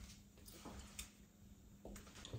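Near silence: room tone with a faint low hum and a few soft ticks.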